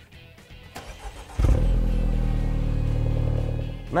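A MINI's engine starting from the push-button start-stop system. It catches suddenly about a second and a half in, then runs at a steady idle.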